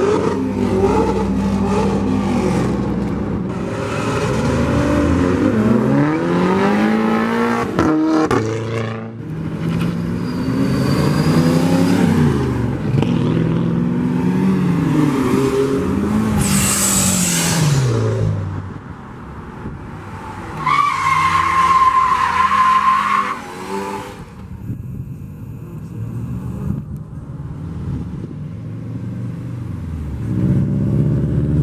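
Car engines revving hard as several cars accelerate past one after another, the pitch climbing and dropping again with each gear shift. There is a brief high-pitched squeal a little past the middle, then a quieter, lower engine rumble near the end.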